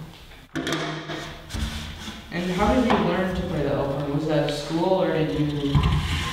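Wooden alphorn sections being slid and fitted together while the horn is assembled, with a sharp knock or scrape about half a second in. A man's voice talking runs over most of it.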